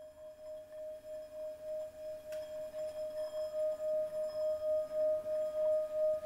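Brass singing bowl sung by circling a wooden mallet around its rim: one steady ringing tone that swells louder throughout, wavering in loudness about three times a second.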